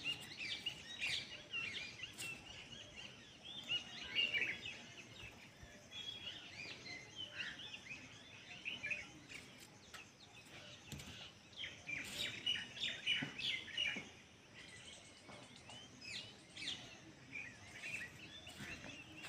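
Small birds chirping, faint: many short, high chirps and twitters in loose clusters throughout, busiest around four seconds in and again around twelve to fourteen seconds in.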